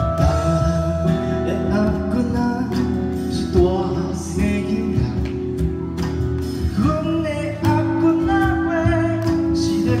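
Live band music with a drum kit played up close, along with guitar and singing.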